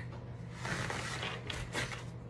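Paper towel rustling as it is grabbed and wiped across a wooden tabletop to mop up puppy urine, with a soft rustle about halfway through and brief scrapes near the end, over a steady low hum.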